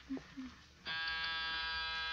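Radio-drama door buzzer sound effect giving one steady electric buzz from about a second in: a visitor at the apartment door.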